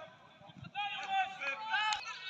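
Raised voices calling out during a football match, starting after a brief lull a little way in.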